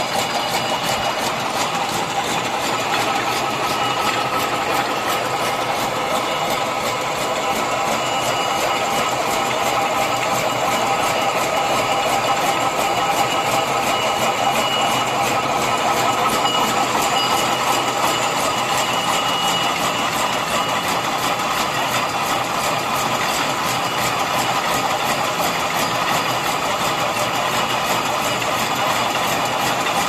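Barbed wire making machine running at speed: the spinning strand-twisting head and the barb-forming mechanism make a steady whirring hum with a fast, even mechanical clatter that goes on without a break.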